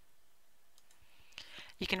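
A few faint, sharp clicks in a quiet pause, then a woman starts speaking near the end.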